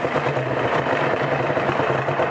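Cabin sound of a BMW F30 3 Series with full bolt-ons cruising at steady freeway speed: an even engine drone under tyre and road noise, with no change in revs.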